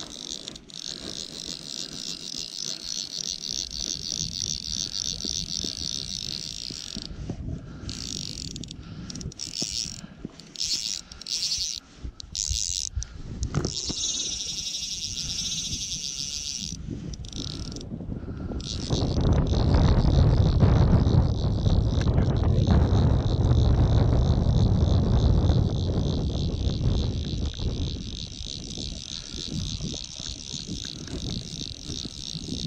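Fly reel's click ratchet buzzing in a fast, even run of clicks as a hooked fish is played on a bent fly rod, broken into stop-start spurts in the middle. A louder low rumble comes in from about 19 to 26 seconds in.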